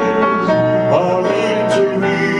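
A man singing a slow ballad into a microphone, accompanied by a grand piano, with sustained held notes and a short pitch glide about halfway through.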